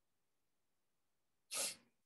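Near silence, then a single short, sharp breath-like burst from a person about one and a half seconds in, lasting under half a second.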